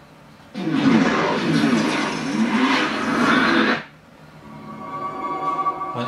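Dolby TrueHD 7.1 logo trailer playing through home-theatre speakers: a loud swirling whoosh with sweeping pitches for about three seconds that cuts off suddenly, then a steady chord swelling up near the end.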